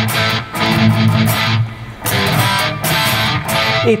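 Electric guitar played through a Fractal Audio Axe-Fx III modelling the Revv Generator Purple 1 amp: chords strummed in phrases, with short breaks about half a second and two seconds in.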